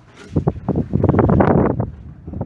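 Wind buffeting the microphone in a loud, gusty rumble that picks up about a third of a second in and eases off near the end.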